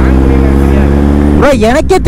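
A steady low hum of even pitch, engine-like, which cuts off abruptly about a second and a half in as a man's voice begins.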